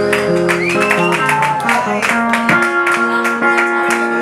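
An acoustic guitar and an electric guitar playing a song together live: strummed chords with held notes, in a steady rhythm.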